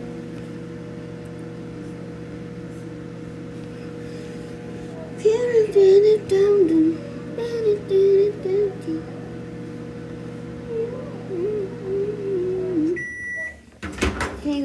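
Microwave oven running with a steady hum while melting butter, then stopping near the end with a single electronic beep about a second long. A voice hums a tune over it for the second half.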